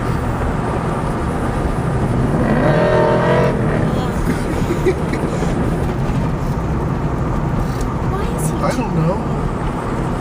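Steady road and engine noise heard inside the cabin of a moving car. About two and a half seconds in, a brief pitched sound lasts about a second.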